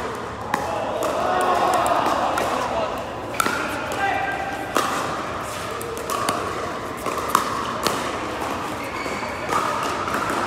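Pickleball paddles striking a hard plastic ball during a doubles rally: about six sharp pops at uneven intervals, carrying in a large indoor hall, over a background of voices.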